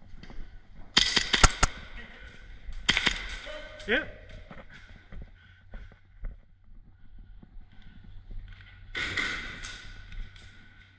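Airsoft gun firing: a quick run of sharp cracks about a second in, then a few more around three seconds in, with a short noisy burst near the end.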